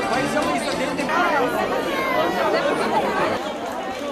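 Crowd chatter: many people talking at once, their voices overlapping with no single speaker standing out.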